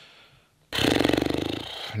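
A man snoring once: one loud, rattling snore of about a second that starts abruptly just under a second in and fades away.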